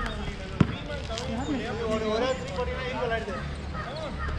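A basketball bouncing on a hard outdoor court: a few sharp bounces in the first second or so, the loudest about half a second in, amid players' voices.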